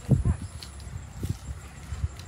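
Footsteps of someone walking with the camera across ground strewn with dry leaves: a few dull, irregular thuds, the loudest just after the start.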